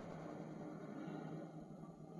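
Faint steady hiss of room tone.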